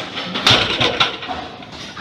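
A 460-lb loaded barbell set back down on the lifting platform after a deadlift: the plates land with a heavy thud about half a second in, then knock again about a second in.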